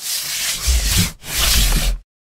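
Scratchy rubbing sound effects for an animated logo wipe: two loud bursts of rasping noise over a deep bass rumble, the second starting just past a second in and cutting off suddenly.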